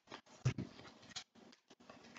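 Faint clicks and soft taps of tarot cards being handled and laid on a table, a handful of separate small sounds with the strongest about half a second in.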